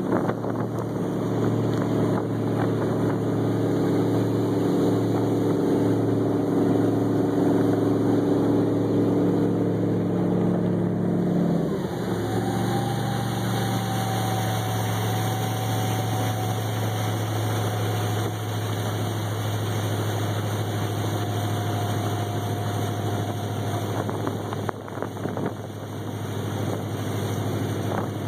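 Hacker-Craft mahogany runabout's inboard engine running under way, then eased back about twelve seconds in to a lower, steady, slower running.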